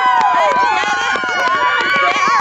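Sideline spectators cheering and calling out just after a goal, many voices overlapping.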